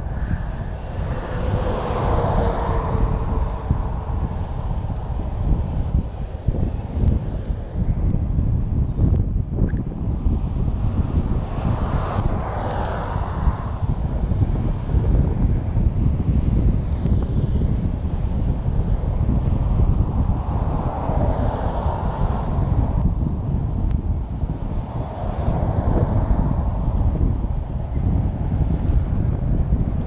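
Wind buffeting the microphone of a moving bicycle's camera, with vehicles passing on the adjacent highway, each rising and fading away, about four times.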